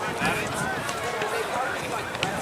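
Distant voices of youth soccer players and sideline spectators calling out. A louder shout ends right at the start, and fainter calls follow over steady background noise.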